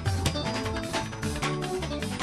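Fuji band music: an electric guitar playing over a steady percussion beat and bass.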